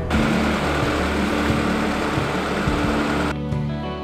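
Background music with steady low sustained notes. An even, loud rushing noise lies over it for the first three seconds and cuts off suddenly.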